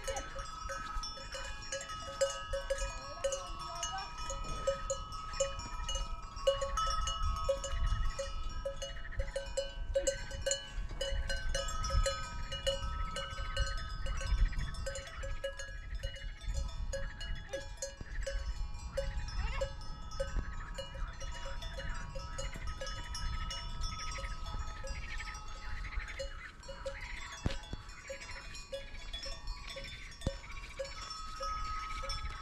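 Cowbells on a herd of grazing cattle clinking and ringing on and off throughout, one metallic tone pulsing about twice a second, over a low rumble.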